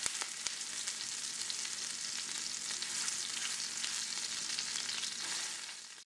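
A homemade burger patty frying in hot oil in a nonstick skillet: a steady, dense sizzle with fine crackling throughout.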